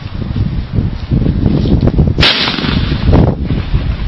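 A single scoped rifle shot about two seconds in: one sharp crack that dies away quickly, over a low uneven rumble.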